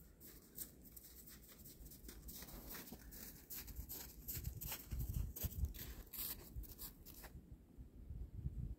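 Faint, irregular crunching footsteps on snow and dry leaf litter that stop about seven seconds in, over a low rumble on the microphone.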